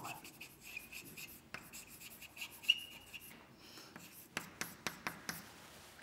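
Chalk writing on a blackboard: scratching strokes with a faint high squeal through the first three seconds, then a quick run of short sharp taps as the chalk strikes the board.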